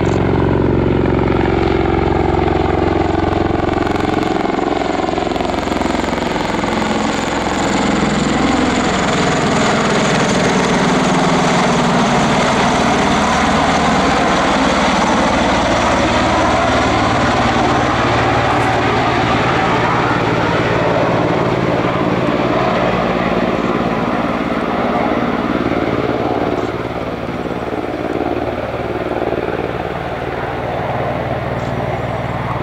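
Bell Boeing MV-22B Osprey tiltrotor in helicopter mode on a low landing approach: the loud, steady sound of its two proprotors and turboshaft engines, its tone sweeping slowly as the aircraft passes and turns away, a little quieter near the end.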